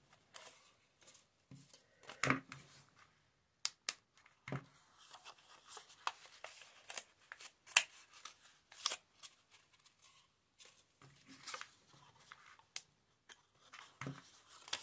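Soft, intermittent rustling and crinkling of old book-page paper as cut petals are handled and pressed together, with scattered small clicks and taps.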